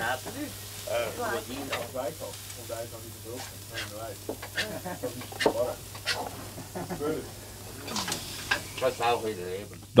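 Cutlery clinking and scraping on plates, several sharp clicks, while people at a meal table talk quietly, with a steady low hum underneath.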